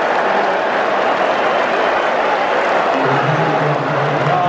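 Football stadium crowd in the stands: a dense, steady wash of applause and crowd noise. A low steady hum joins it about three seconds in.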